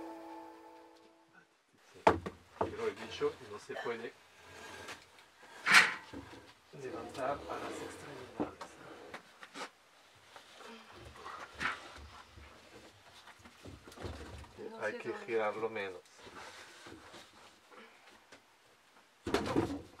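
A large plasterboard sheet being handled and lifted against a wooden stud frame: scattered knocks and bumps, the sharpest one a little before six seconds in. Brief low voices come in between.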